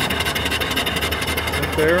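Small single-cylinder live steam engine and its wood-fired boiler running steadily, with a fast, even mechanical beat over a low hum.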